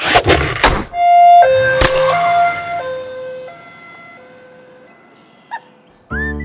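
A loud crash, then a cartoon two-tone siren going high-low, each note held about two-thirds of a second, fading away over about four seconds. A sharp thump comes about two seconds in.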